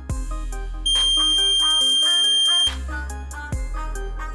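Piezo buzzer on the Arduino ultrasonic smart goggles giving one steady, high-pitched beep of about two seconds, starting about a second in, over background music. This is the warning that an obstacle is closer than 12 centimetres.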